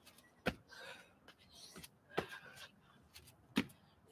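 Three dull thuds of a person's feet and hands landing on an exercise mat during burpees, about a second and a half apart.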